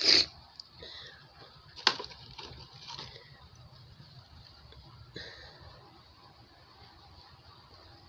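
Handling sounds from small Christmas ornaments and plastic packaging: a short noisy burst at the very start, a sharp click just before two seconds in, and a few softer rustles, over faint room tone.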